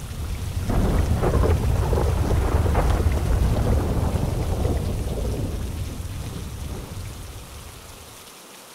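A long roll of thunder over steady rain: the rumble swells in the first second, is loudest between about one and three seconds in, and fades away over the next few seconds.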